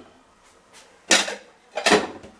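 Ceramic dishes being put away in a kitchen wall cabinet: two short clatters, one about a second in and one near the end.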